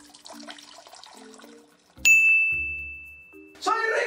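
A stream of liquid splashing into a toilet bowl for about two seconds, under a light music line. About two seconds in a bright bell-like ding rings out, the loudest sound, and holds for about a second and a half. Near the end a loud vocal exclamation begins.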